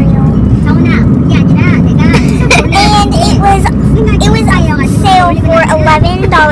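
Steady low rumble of a car on the road, heard from inside the cabin, under a girl's voice talking.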